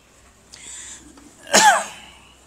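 A single loud, short cough about one and a half seconds in, its pitch falling, preceded by a quieter breathy hiss.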